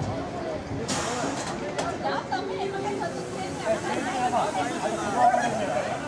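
Background chatter of several people talking at once, with no clear words, and a short hiss about a second in.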